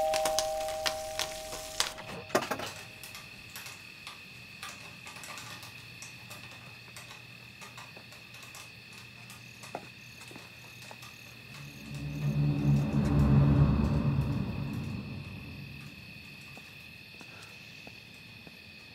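Horror film score: a thin, sustained high tone underlies a low, swelling drone that builds about twelve seconds in and dies away a few seconds later. At the start a doorbell chime rings out and fades, followed by a few sharp clicks.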